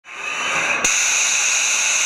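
Machining-centre spindle spinning an end mill in a milling chuck at speed, a steady high hiss that fades in, with a sharp click just under a second in. The tool is not yet in the cut.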